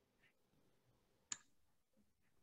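Near silence: room tone, with one short sharp click about a second and a half in.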